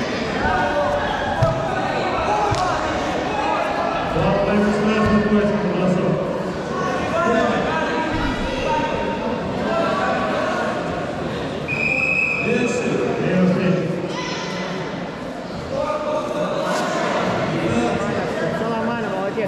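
Indistinct voices of coaches and spectators echoing in a large sports hall, with a few short thuds of fighters on the mats. A short, steady high tone sounds once about twelve seconds in.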